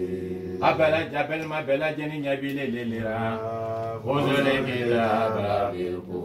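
A man chanting an Islamic prayer recitation in Arabic, in drawn-out melodic phrases with long held notes. New phrases begin just under a second in and again about four seconds in.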